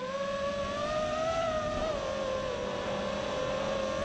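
EchoQuad 230 FPV racing quadcopter's electric motors and propellers whining in flight, holding a nearly steady pitch as it cruises.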